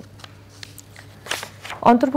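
A few soft rustles of a paper script sheet being handled on a newsreader's desk, over a faint steady hum.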